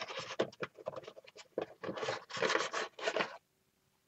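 Paper mache star scraping and rustling against the surface as it is turned and slid about into position, in irregular strokes that stop about three and a half seconds in.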